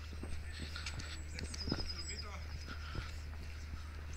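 Footsteps on stone paving, a run of short ticks, with a few short bird calls and a brief high trill about halfway through, over a low steady hum.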